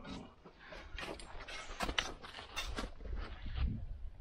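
Crampon footsteps crunching in snow, an uneven series of steps a fraction of a second apart, over a low rumble that swells near the end.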